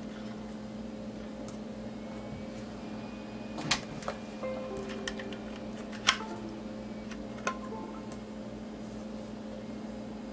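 Faint electronic beep tones as the USB connection to a Rumba 3D printer board is made. There are three sharp clicks of handling over a steady low hum.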